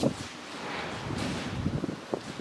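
A pause in speech filled with steady rushing background noise, after the tail of a spoken syllable right at the start.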